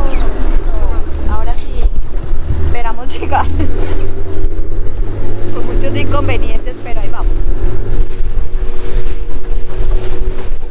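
An open launch's motor running steadily under way, with a low wind rumble on the microphone and passengers' voices over it.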